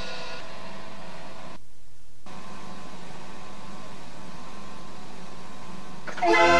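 Steady hiss and faint low hum in the pause between tunes of a 105-key Decap dance organ, as the last notes of the previous tune die away in the first half second. The hiss briefly cuts out about two seconds in.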